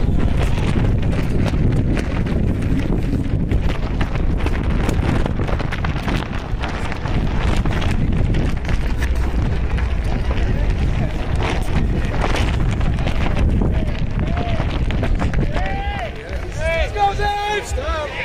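Wind buffeting the microphone, a steady low rumble throughout, with indistinct voices of an outdoor crowd. Near the end a voice calls out, its pitch rising and falling.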